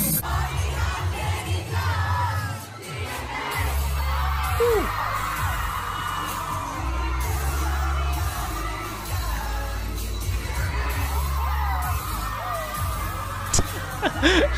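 K-pop music with a heavy bass beat, played loud at a live concert and recorded from among the audience. A crowd of fans is screaming and singing along over it.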